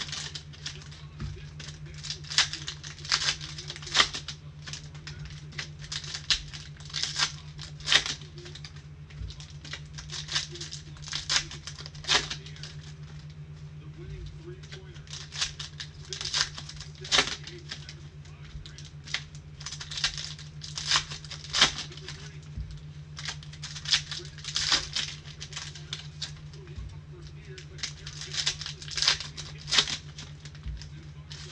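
Trading-card pack wrappers being crinkled and torn open by hand, in repeated short crackling bursts about every second, over a steady low hum.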